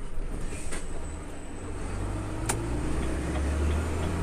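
Heavy truck's diesel engine heard from inside the cab, running with a low hum that builds and rises gently in pitch in the second half as it pulls through a roundabout. There is one sharp click about halfway through.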